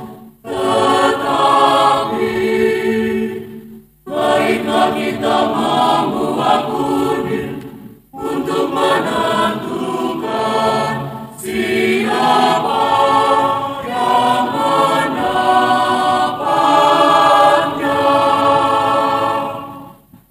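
A choir singing the soldiers' words in a sung Passion, phrase by phrase with short breaks for breath between phrases.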